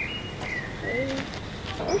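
Birds calling: a few short high chirps in the first second, and a low cooing call a little after half a second in. A voice says "ooh" at the very end.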